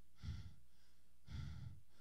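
A man breathing heavily into a handheld microphone during a pause. There are two faint breaths, the second one longer.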